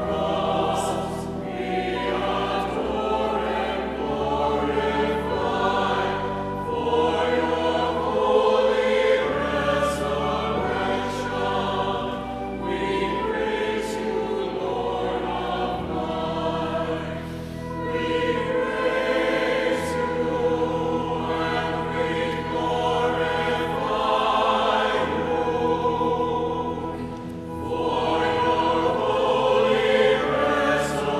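A church choir sings in phrases of several seconds, with low sustained accompaniment notes underneath.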